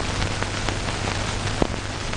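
Steady hiss and crackle of an old analog film soundtrack, with a low hum underneath and scattered clicks, one sharper click about one and a half seconds in.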